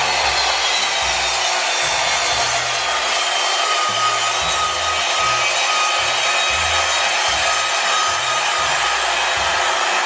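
Ryobi compound miter saw running with a steady whine as its blade is eased slowly down through a piece of wood. The cut is so slow that it burns the wood.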